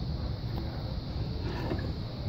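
An interactive display panel being flipped over by hand, with faint clicks about half a second in and again near the end, over a steady low rumble of room noise.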